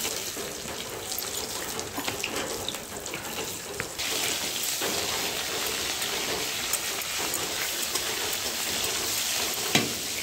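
Chopped onion and chilies sizzling in hot oil in a wok over a wood fire. The sizzle grows louder about four seconds in, and a single knock comes near the end.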